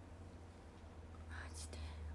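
A woman's short breathy, whispered sound about one and a half seconds in, over a low steady hum.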